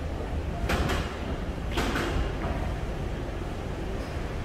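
Steady low rumble of a concrete parking garage, with two short scraping, hissing noises about a second apart.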